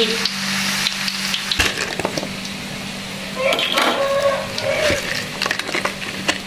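Hot oil sizzling as peanut rice-flour crackers (peyek) deep-fry in a wok, with a spoon ladling oil over the batter. There is a single knock about one and a half seconds in, and the sizzle fades about halfway through.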